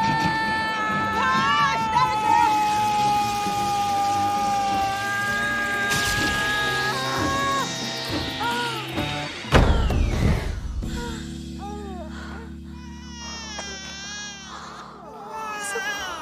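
Dramatic film score with a woman's long strained scream in labour, a swept effect and a heavy thump about halfway through. Then a newborn baby cries over a low held chord.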